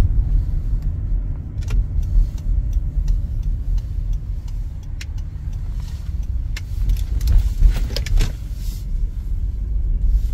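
Steady low road rumble of a car driving, heard from inside the cabin, with scattered light clicks and taps, several close together a little past the middle.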